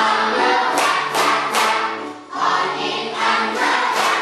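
A class of children singing a song together in unison, clapping along in time.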